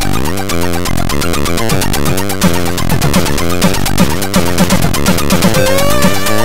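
AHX-format chiptune played in Hively Tracker, four channels of square and pulse waves and white noise: a steady square-wave bass under noisy parts and many quick falling pitch sweeps, with a held higher tone coming in near the end.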